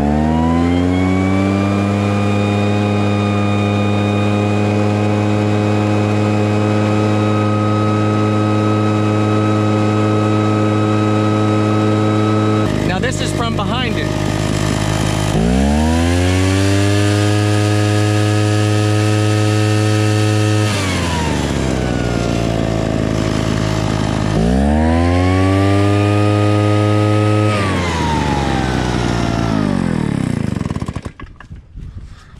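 Backpack leaf blower running flat out with a loud, steady pitched whine. It drops back twice and revs up again, then drops back once more near the end.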